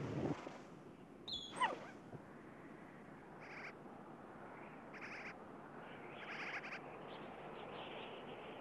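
Yellow-bellied marmot giving three short, high alarm chirps about a second and a half apart, the warning call a marmot sounds at a predator. Before them, about a second in, comes a louder call that slides steeply down in pitch.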